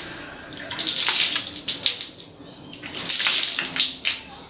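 Water splashing as a face is washed with handfuls of water, in two bursts about two seconds apart.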